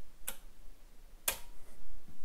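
Two sharp mechanical clicks about a second apart, the second louder: a control relay switching and a rotary selector switch being turned to off on a PLC panel, dropping the relay out of its two-seconds-on, one-second-off auto cycle.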